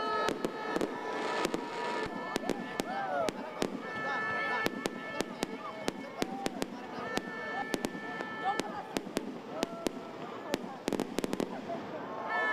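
Fireworks going off: many sharp bangs and crackles at irregular intervals, with a quick run of bangs near the end.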